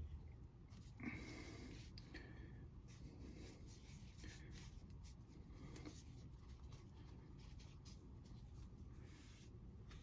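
Faint, intermittent rubbing of an absorbent cleaning pad over a comic book's paper cover, as a stain is wiped at in a few soft strokes.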